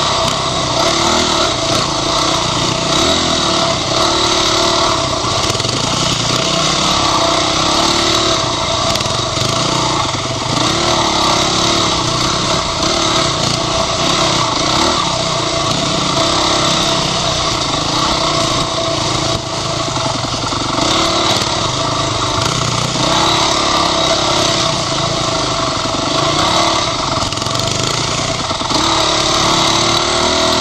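Dirt bike engine running under load on trail, its revs rising and falling every second or two as the throttle is worked, with a brief dip in level about two-thirds of the way through.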